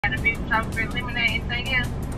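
Quiet, indistinct talking over the steady low rumble inside a car's cabin.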